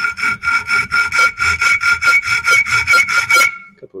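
Hacksaw cutting into metal stock held in a bench vice: quick, short back-and-forth strokes, several a second, with the thumb guiding the blade to start the notch, over a steady ringing tone. The sawing stops about three and a half seconds in.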